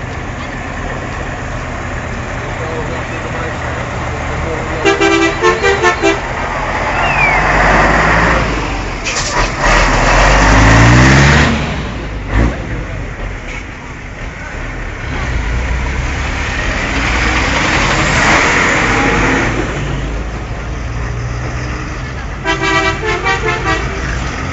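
Heavy rally trucks running past with loud engines, one revving up about ten seconds in. A horn sounds twice in a quick run of toots, about five seconds in and again near the end. Crowd voices run underneath.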